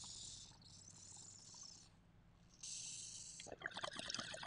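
A hit from a glass water pipe. There is a hissing draw of air, a short pause, then another draw, and near the end the water starts to bubble and gurgle with crackly clicks.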